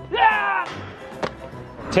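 A brief shout, then a single sharp thud about a second and a quarter in as a soft toy doll is thrown against a steel mesh fence and drops to the ground. Background music runs underneath.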